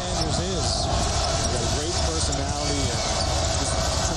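Basketball arena crowd noise, with a basketball being dribbled on the hardwood court.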